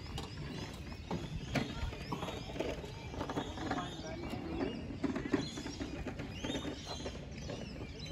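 Outdoor ambience of background voices chattering, with small birds chirping high overhead and a few scattered clicks or knocks.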